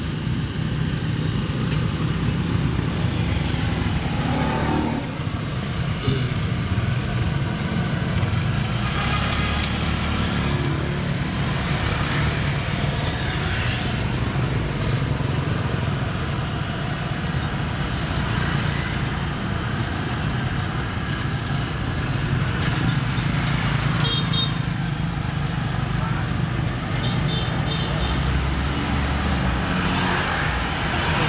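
Street traffic with motorbikes, heard from a moving cyclo, over a steady low rumble of road and wind noise.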